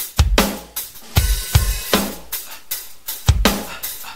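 Rock song with a drum kit playing stop-start hits and cymbal crashes, separated by short pauses, with electric bass underneath.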